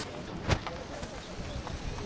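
Very faint distant thunder under outdoor ambient noise, with one sharp click about half a second in.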